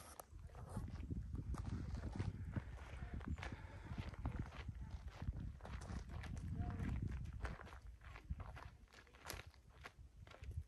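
Footsteps crunching on a dirt and gravel trail at a walking pace, with a low rumble underneath.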